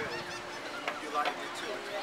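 Gulls calling: several short, squawking calls over steady background noise, the loudest about a second in.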